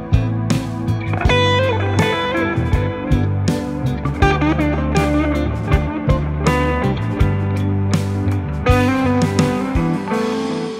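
Rock band playing live without vocals: electric guitar lines over bass and drums, the drum hits falling about twice a second.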